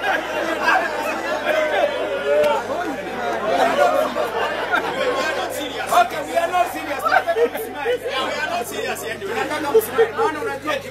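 Audience chatter: many voices talking over one another at once, with a few short sharp sounds in the second half.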